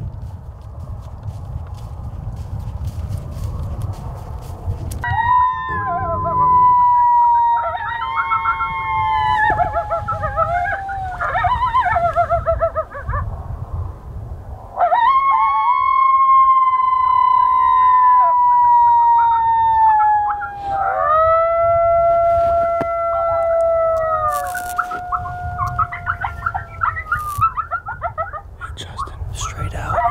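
Coyote howls: long, drawn-out howls that slide down in pitch, broken up by warbling yips, in two bouts with a short pause near the middle, the second ending in steadier, lower howls.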